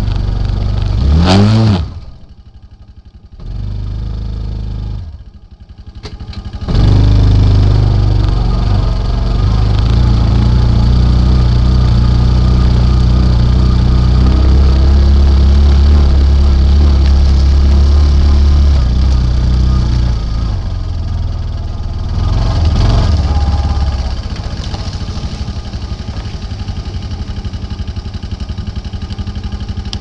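Polaris Ranger utility vehicle engine revving up about a second in and dropping away twice, then running steadily under load as it drives, heard from a camera taped to its front, with wind noise and rattling on the mount.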